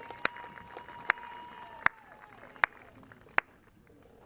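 A long, high-pitched cheer from the audience, held steady for about two and a half seconds and then falling away. Over it, five sharp, loud handclaps close by, evenly spaced a little under a second apart.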